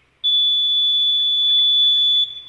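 Electronic voting machine giving one long, steady high-pitched beep starting a moment in, the signal that a vote has been recorded.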